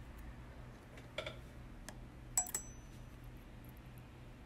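A steel surgical needle holder being handled while suturing: a soft click about a second in, then a sharp metallic clink with a brief high ring a little past halfway, over a low steady hum.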